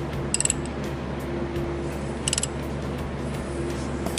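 Ratchet wrench on the crankshaft pulley bolt clicking in two short, quick bursts, about half a second in and a little past two seconds in, as the handle is swung back between pulls while the engine is turned over by hand to line up the timing marks. A low steady hum runs underneath.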